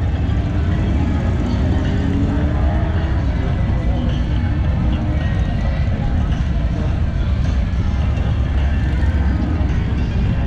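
Street din of motorcycle engines running and revving as bikes ride along the street, over a steady low rumble, with people's voices mixed in.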